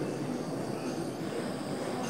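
Small handheld gas torch flame hissing steadily as it heats a springy metal part to anneal it.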